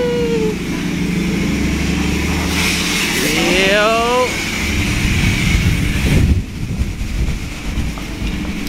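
A car engine rumbling low as a lowered sedan rolls in, with a shout trailing off at the start and another shout rising in pitch around three to four seconds in.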